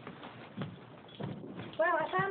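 Three footsteps on a hard floor, about half a second apart, then a woman begins speaking near the end.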